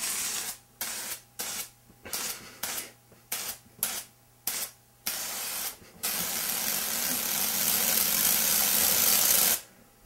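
Aerosol can of Silly String spraying in a quick series of about ten short hissing bursts, then in one long steady spray of about three and a half seconds that stops just before the end.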